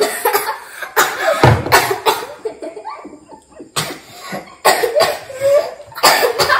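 A girl coughing in short, repeated fits after a sip of water, amid children's laughter.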